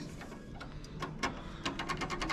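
Faint, scattered metal clicks and ticks from parts of a bowling pinsetter's ball wheel pulley and belt assembly being worked by hand, coming more closely together near the end.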